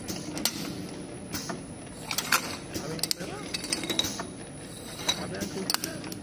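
HYXG-1R automatic single-head test tube capping machine running, its rotary table turning with a steady mechanical whirr and irregular sharp clicks and clinks, about eight in six seconds, the loudest about two seconds in.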